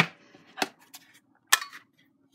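A Stampin' Up Bow Builder paper punch being picked up and turned over by hand, its plastic housing giving a few short, sharp clicks and knocks: a strong click at the start, softer knocks about half a second and a second in, and another sharp click about a second and a half in.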